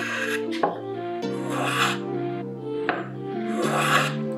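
Small hand plane shaving the end grain of a pine block in three short scraping strokes, over background music.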